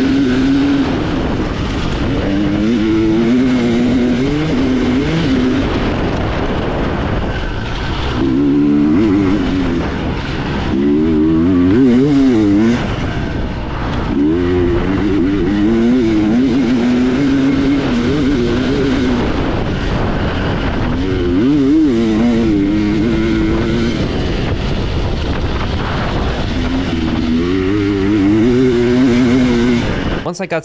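Two-stroke dirt bike engine at race throttle, revving up and dropping back again and again as the rider accelerates and slows for turns.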